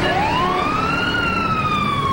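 A siren-like wail, used as a sound effect: one tone that glides up over about a second, then slowly falls, over steady noise.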